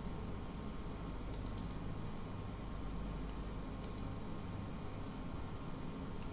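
A few faint clicks of computer input over a steady low room hum. There is a small cluster about a second and a half in and another about four seconds in.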